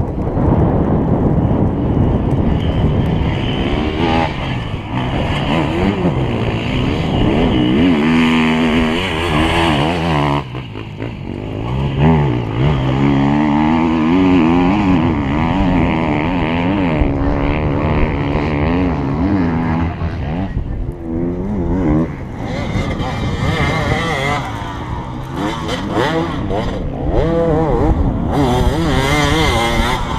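Enduro motorcycle engines revving hard as riders pass on a dirt special test, the pitch climbing and dropping again and again as they accelerate and shift.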